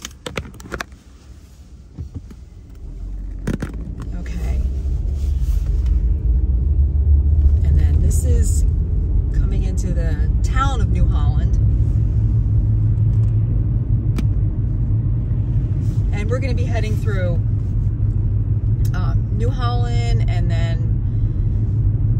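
Low, steady rumble of a car's engine and tyres heard from inside the cabin. It builds over the first few seconds as the car gets moving and then holds at town speed. A few sharp clicks come in the first couple of seconds.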